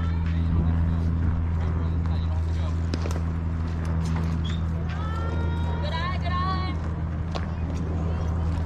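Players' voices shouting across a softball field, with one long drawn-out call about five seconds in, over a steady low hum.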